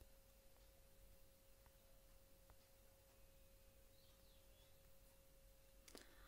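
Near silence: room tone with a faint, steady hum held at one pitch.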